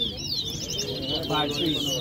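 Caged towa towa finches singing against each other in a song contest: rapid, high, repeated warbling phrases that follow one another and overlap with no pause.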